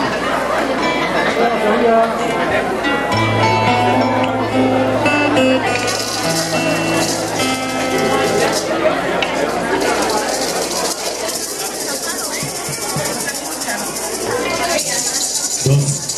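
Live music from a small folk group: acoustic guitars playing held notes, joined about six seconds in by a steady hissing rattle of hand percussion.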